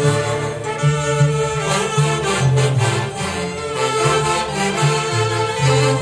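A live saxophone section playing a melody together in harmony, over a low bass part that moves in steps and a steady beat.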